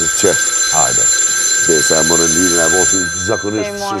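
Desk telephone bell ringing: one long ring that starts suddenly and lasts nearly four seconds, with voices talking over it.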